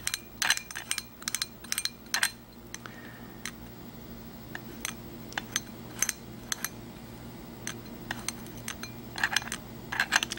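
Reichert phoroptor sphere lens power wheels being turned by hand, each small metallic click a detent stepping the lenses one quarter-unit increment. The clicks come close together at first, then more spaced out, then quicker again near the end, over a faint steady hum.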